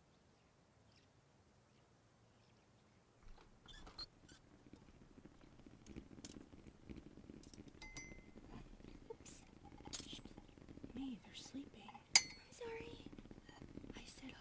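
Near silence for about three seconds, then soft clicks and clinks of crockery and cutlery being handled, like dishes set on a breakfast tray, with faint voice sounds beneath. A sharp clink about twelve seconds in is the loudest.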